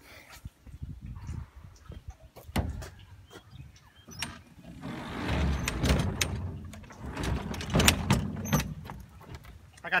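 A string of clunks, knocks and scrapes as a TroyBilt push mower is dragged across a pickup truck's bed onto the tailgate. The knocks are sparse at first and grow louder in the second half, with the sharpest bangs about two seconds before the end.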